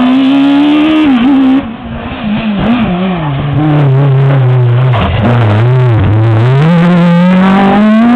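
Renault Mégane Maxi rally car's four-cylinder engine, loud and close, its revs dropping and wavering as it slows into a hairpin. The revs stay low through the turn, then climb steadily as it accelerates away near the end.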